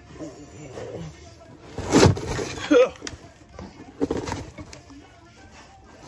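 Old, crumbling sound-deadening material being tugged, torn and scraped away under a car, in irregular noisy rasps, the loudest about two seconds in and more about four seconds in. Short grunts and breaths of effort come between them.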